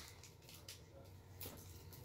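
Near silence: room tone with a couple of faint soft clicks from a small plastic toy capsule being handled and opened.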